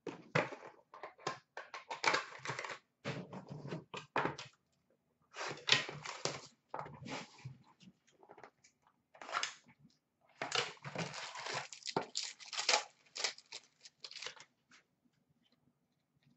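Upper Deck Stature hockey card pack being taken from its box and torn open: irregular bursts of crinkling and tearing wrapper with short pauses, dying away near the end.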